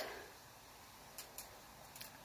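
Very quiet, with two faint, sharp ticks a fraction of a second apart just past the middle.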